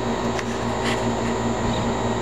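Small desktop laser engraver running a job, its motors and fan giving a steady hum with a faint high whine. There is a small click about a second in.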